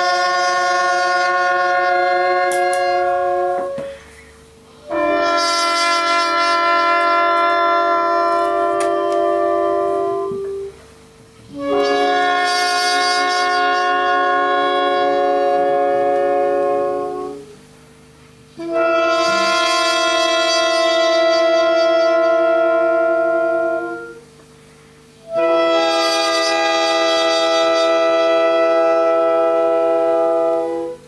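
Horn and reed section (trombone, saxophone, trumpet, clarinet) playing a series of long held chords together: five chords of four to six seconds each, cut off together with about a second's break before the next. A faint steady tone carries on under the breaks.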